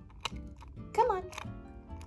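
Miniature toy graham crackers shaken and knocked out of a tiny box, giving a couple of light clicks as they drop onto the toy tray.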